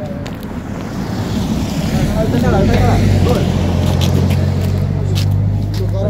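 A motor vehicle's engine running close by as a steady low hum, growing louder about a second in and then holding steady, with brief voices over it.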